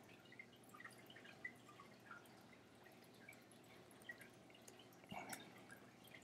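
Near silence: faint room tone with a few scattered small ticks and a slightly louder faint sound about five seconds in.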